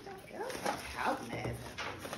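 A dog whining: several short, wavering whimpers.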